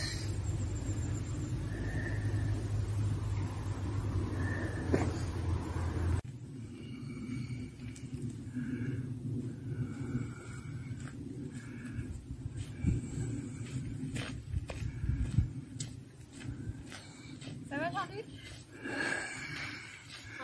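Low rumble of wind on the microphone, ending abruptly about six seconds in. After that, faint, indistinct voices with a few light knocks.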